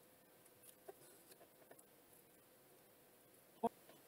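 Near silence with a few faint clicks from wooden clothespins being handled and clipped onto hair, and one short vocal sound a little before the end.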